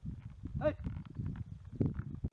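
A short voice call about two-thirds of a second in, over a continuous low rumbling noise, with more calling near the end.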